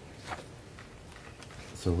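Faint rustling of papers being handled at a table, with a brief rustle about a third of a second in, over a low room background; a voice starts speaking near the end.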